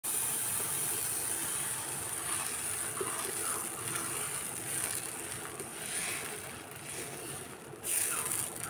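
Dosa batter sizzling on a hot nonstick pan as it is poured from a ladle and spread in circles with the ladle's back: a steady hiss that slowly eases off.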